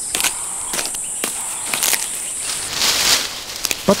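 A steady high-pitched insect drone that cuts off about two-thirds of the way in, over a series of sharp clicks and rustles of chimpanzees handling sticks and branches in a tree.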